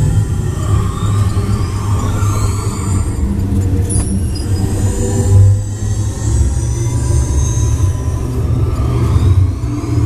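Test Track ride vehicle rumbling steadily along its track, with high whooshing sound effects from the ride's soundtrack sweeping up and down above it.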